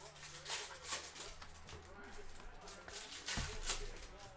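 Light clicks and handling noises at a desk over a faint low hum, with a dull thump about three and a half seconds in.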